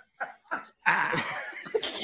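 A person laughing hard into a mic: a couple of short breathy gasps, then about a second in a longer, louder burst of laughing that breaks into coughing.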